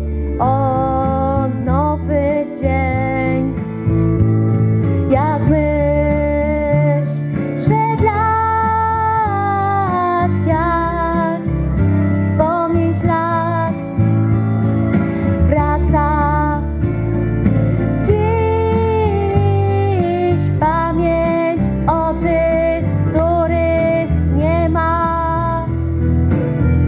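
Instrumental break in a recorded backing track for a patriotic pop-rock song: a lead melody line over bass and a steady accompaniment, with no singing.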